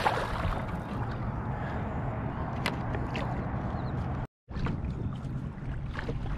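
Water sloshing and lapping against a kayak hull over a steady low rumble, with a splash right at the start as a sheepshead on a stringer thrashes at the surface and a few light clicks later. The sound cuts out completely for a moment about four seconds in.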